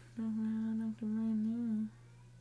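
A woman humming two held notes, each about a second long, the pitch dipping slightly near the end of each.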